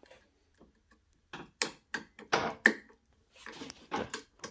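A string of sharp clicks and short rattles, bunched between about one and three seconds in and again near the end, from a hand working the socket on the neck of a vintage television's picture tube; the socket is loose.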